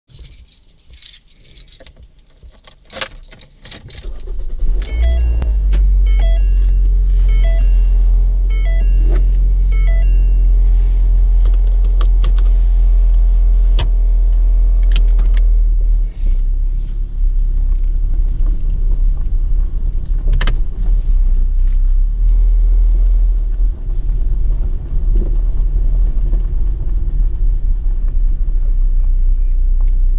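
Clicks and a jingle, then a loud, steady deep rumble that starts about four seconds in and carries on. Over the next several seconds a run of evenly spaced short electronic chimes sounds.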